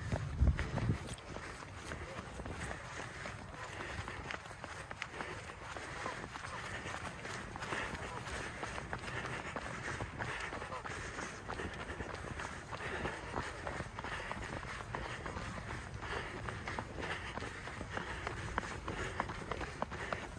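Running footsteps on a rubberized synthetic running track, a steady rhythm of footfalls close to the microphone.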